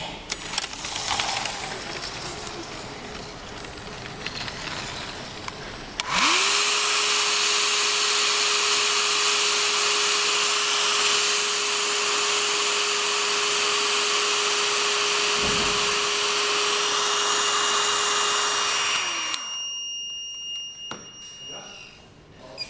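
A hair dryer is switched on about six seconds in. Its motor whines up to a steady pitch under a loud, even blowing, and it cuts off about three seconds before the end; it is heating a temperature sensor to set off the abnormal-temperature emergency. A few seconds before the dryer stops, a piezo buzzer begins a steady high beep, the over-temperature alarm, which runs until just before the end.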